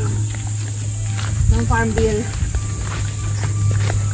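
Footsteps through brush and undergrowth, with a short untranscribed voice about halfway through, over a steady low hum and a steady high hiss.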